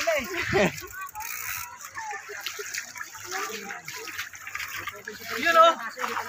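Shallow stream water splashing as it is scooped by hand onto a bicycle to wash it, with people's voices talking over it.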